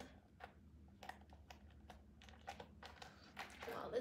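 Faint, scattered small clicks and light rustling of hands handling a small leather handbag with a metal chain strap.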